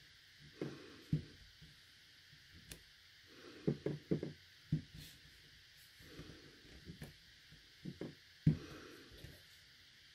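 Clear acrylic stamp block tapped on an ink pad and pressed down onto cardstock: a series of soft knocks and taps, with a quick cluster about four seconds in and the loudest knock near the end.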